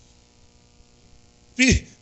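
Faint steady electrical mains hum from the church sound system. About one and a half seconds in, a man's voice breaks in briefly and loudly with a falling pitch.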